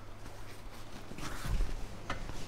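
Headliner fabric rustling and scraping as it is pulled up and handled against the roof, louder with a soft bump about one and a half seconds in, over a steady low hum.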